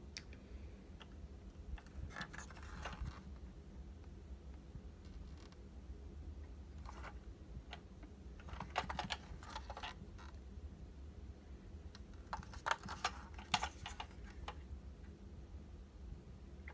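Handling noise from a 1/24 diecast model car being turned over in the hands: faint, scattered clusters of light clicks and taps over a low steady hum.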